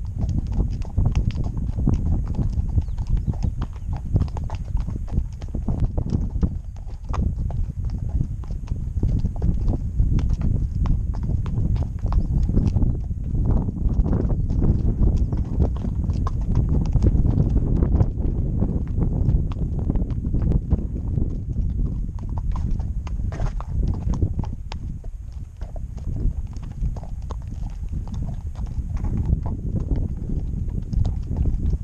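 A ridden horse's hooves clopping steadily on a stony dirt track, heard from the saddle, over a constant low rumble.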